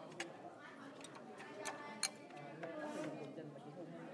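Chatter of several voices, with a few sharp clicks breaking in; the loudest click comes about two seconds in.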